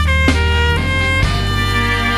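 Layered Yamaha SV-250 electric violin tracks playing held, bowed notes over a heavy low backing, with sharp hits about a third of a second in and again just past a second.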